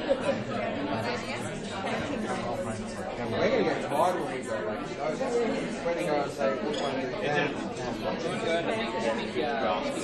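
Many people talking at once in small table groups, a steady hubbub of overlapping conversations in a large function room.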